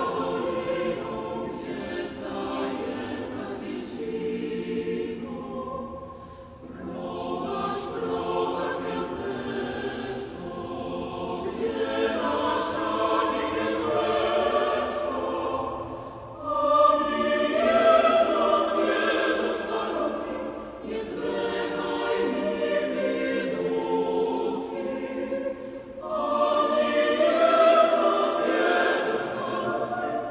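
Mixed choir singing a Polish Christmas carol in long sustained phrases. There are brief breaks between phrases about six, sixteen and twenty-six seconds in, and the last two phrases come in louder.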